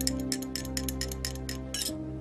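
A metal teaspoon clinking quickly against a tulip-shaped Turkish tea glass as tea is stirred: about a dozen light, high clinks over soft background music with long held notes.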